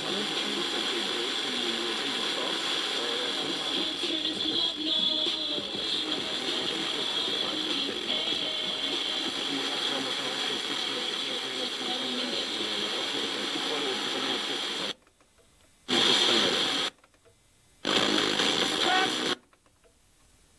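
FM radio tuner receiving a distant station by sporadic-E: faint speech and music buried in heavy hiss. About fifteen seconds in the audio cuts out, comes back in two short loud bursts and cuts out again as the tuner is stepped to new frequencies.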